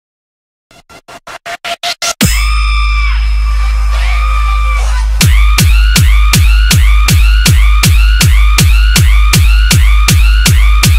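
EDM DJ remix beginning from silence: a quick run of hits that grow louder, then a held deep bass with steady synth tones, and from about five seconds in a pounding kick-drum beat over heavy bass, a little under three beats a second.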